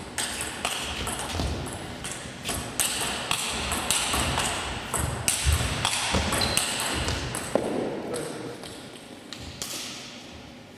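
Table tennis rally: the ball ticks back and forth off bats and table at roughly two hits a second, with footsteps and shoe scuffs on the court floor. The rally ends about eight seconds in and the sound dies down.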